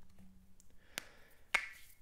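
Two sharp computer keyboard keystrokes about half a second apart, the second louder with a brief ring.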